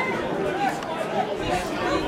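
Indistinct chatter of several voices around a football pitch, from spectators and players.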